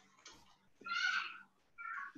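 A high-pitched, wavering cry, heard twice: a longer one about a second in and a shorter one near the end.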